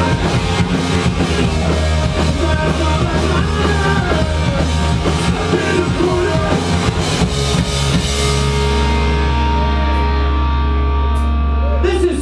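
Live rock band playing loud through guitar and bass amplifiers with a drum kit. About eight seconds in the drumming and cymbals stop and sustained guitar and bass notes ring on as the song winds down.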